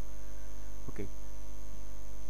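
Steady electrical mains hum on the recording, loud and unchanging, with a faint steady high-pitched whine above it.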